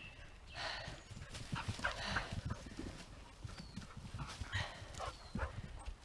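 Quiet, irregular footsteps and scuffs on a soft dirt woodland path, with a dog moving close by.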